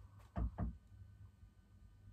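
A person gulping beer from a glass: two quick swallows, a fraction of a second apart, about half a second in.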